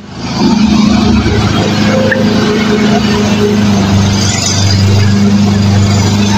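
A loud, steady engine-like drone with a low hum, swelling up over the first half second and then holding even.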